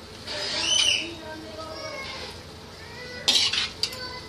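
A serving spoon scraping and clanking against a metal kadai as the cooked chickpea curry is scooped into a bowl. There is a squealing scrape in the first second and a sharp clatter a little past three seconds in.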